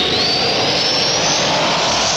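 Jet-like whoosh sound effect: a loud rushing noise with a whistle that rises steadily in pitch throughout, used as a transition stinger at a break in a radio show.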